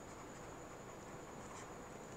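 Faint scratching of a stylus writing on a tablet, heard over low room hiss.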